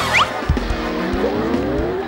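Edited-in TV sound effect over music: a quick falling whistle, then low thumps and a tone that rises slowly in pitch, like a car revving up.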